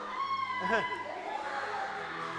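A man gives a short laugh and an "uh", over faint crowd chatter.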